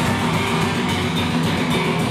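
Heavy metal music with electric guitar playing, dense and steady in level.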